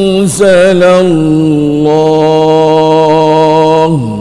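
A man chanting the Quran in Arabic in melodic tajwid recitation: a short phrase rising and falling in pitch, then one long note held steady for nearly three seconds that ends just before the close.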